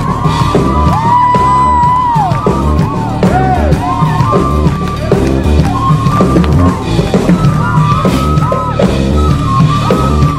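A band playing live: a drum kit keeps a steady beat under a lead line whose notes slide up, hold and bend back down.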